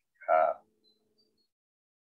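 Only speech: a man's short hesitation sound, "uh", then silence.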